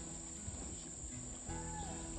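Steady high-pitched insect chorus over the low rush of a shallow river riffle.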